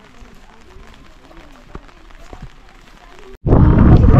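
Faint distant voices and a few soft clicks. After a sudden cut about three and a half seconds in, loud wind buffets the camera microphone with a heavy low rumble.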